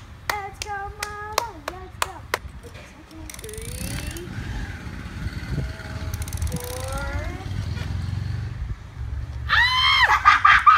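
Hands clapping with a hummed tune for the first two seconds or so, then a low uneven rumble with a few faint voices while the players wait. A burst of shrieking and laughter breaks out just before the end.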